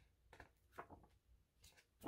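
Near silence, with a few faint, short rustles and ticks of paper as sticker-book pages are handled and turned.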